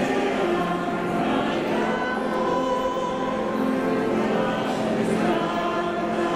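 A choir singing a church hymn in several voices, with long held notes.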